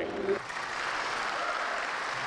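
Audience applauding, beginning abruptly about half a second in and holding steady.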